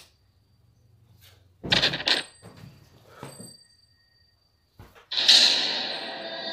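Movie fight-scene soundtrack: two loud sharp bangs close together a little under two seconds in, then a couple of fainter knocks. About five seconds in, a loud hit swells into a sustained ringing music chord.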